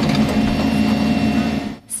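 Diesel engine of a New Holland backhoe loader running steadily, stopping abruptly near the end.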